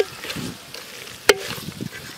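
A metal spoon stirring spice-coated ivy gourd pieces in a metal pot over the fire, scraping through them as they fry. It clanks sharply against the pot twice, with a short ring: once right at the start and once just past halfway.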